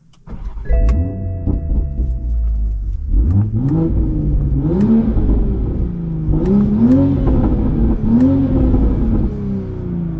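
2023 Toyota Supra's 3.0-litre turbocharged inline-six, through an AWE Touring resonated catback exhaust and high-flow catted downpipe, heard from inside the cabin accelerating: the engine note climbs in pitch and drops back several times as the manual gearbox is shifted, easing off near the end. A steady hum of a few tones sounds for about two seconds near the start, before the pulls begin.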